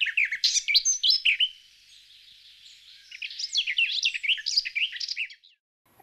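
Several small birds chirping and twittering in quick overlapping calls, busy at first, lulling about two seconds in, picking up again from about three seconds, and stopping short just before the end.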